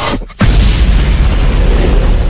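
A cinematic deep boom hits about half a second in, right after a brief drop-out, and leaves a sustained deep rumble under the music.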